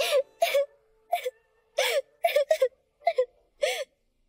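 A young girl crying in short, breathy sobs and whimpers, about two a second.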